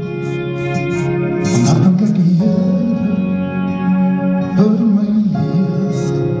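Live band music: a man singing long, wavering notes over acoustic guitar and keyboard, swelling in loudness over the first couple of seconds.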